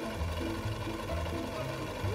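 An old black sewing machine running, stitching fabric, with a low rhythmic sound repeating about two to three times a second. Background music plays under it.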